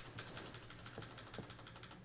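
Faint, rapid run of small clicks from computer controls, about a dozen a second, dying away near the end, made while the embedded video is skipped past an ad.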